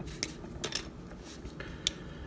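A few light clicks of hard plastic as the small pegged-on weapons are worked off a small plastic transforming robot figure, the sharpest click near the end.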